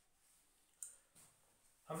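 Near silence with a sharp click a little under a second in and a softer click shortly after, from a whiteboard marker being handled and uncapped just before writing. A man's voice starts at the very end.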